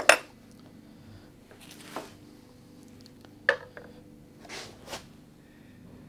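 A sharp knock right at the start, then a few lighter clinks and short scrapes: a metal guitar bridge and a straightedge being set down on a wooden guitar body to check the neck break angle.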